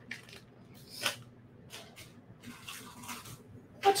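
Faint scattered clicks and soft rustles of small beading supplies being handled and sorted, with one slightly louder click about a second in.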